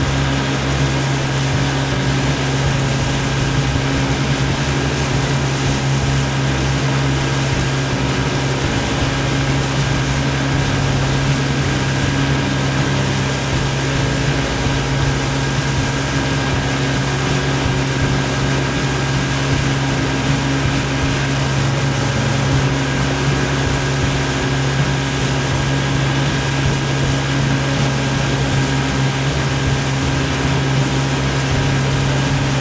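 Motorboat engine running steadily, a constant hum over an even hiss.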